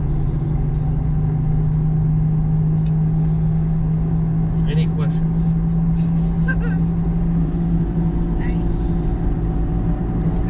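Car engine and tyre noise heard inside the cabin while driving at a steady speed: a steady low drone whose note eases slightly about seven and a half seconds in.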